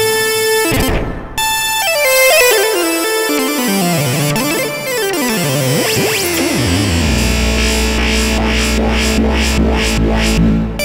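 Novation Peak synthesizer playing an improvised passage. A held note opens it and gives way after about a second to a dense, clashing texture whose pitches slide downward over several seconds. From about seven seconds in it settles onto a steady low bass drone with pulsing hiss above.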